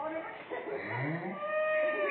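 A young cow mooing: a short call rising in pitch about a second in, then one long, high moo held steady to the end.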